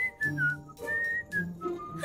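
A short whistled tune of a few notes, stepping down in pitch, over faint background music.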